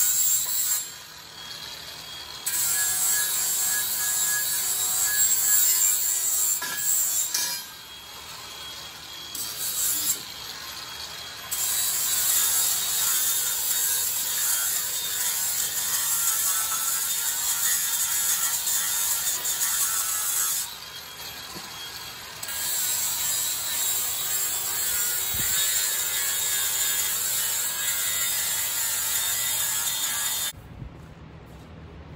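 Cordless angle grinder grinding on steel, cleaning up a plate on a truck frame, running in long stretches broken by a few short pauses.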